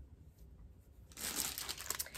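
Clear plastic packaging crinkling as it is handled, starting about a second in and growing louder.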